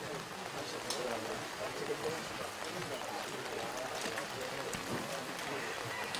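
Faint, indistinct voices of people talking quietly in the room, with a few small clicks and knocks.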